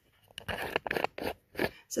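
A quick run of short scraping and rustling noises, several strokes over about a second and a half, as the painted canvas is handled.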